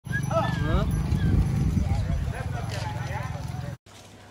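A large flock of goats and sheep bleating, many overlapping short calls, over a steady low rumble from the moving herd. It cuts off suddenly near the end.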